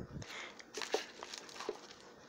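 Faint rustling and a few light ticks from a paper instruction card being handled and turned over.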